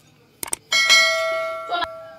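Two quick clicks followed by a bright bell ding that rings on and fades over about a second: the click-and-bell sound effect of a subscribe button animation.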